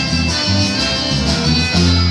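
Latin band music with a rhythmic bass line and strummed strings, which settles about three-quarters of the way through onto a long held chord, like a song's final note.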